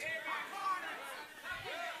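Quiet voices of several people in the congregation talking at once, fainter than the preacher's amplified voice.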